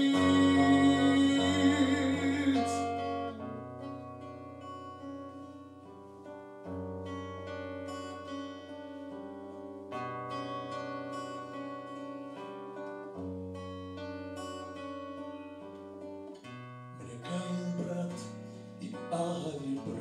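Acoustic guitar played alone in an instrumental passage between verses: picked notes over a bass note that changes every three to four seconds, the playing growing fuller near the end. A man's held sung note fades out about two and a half seconds in.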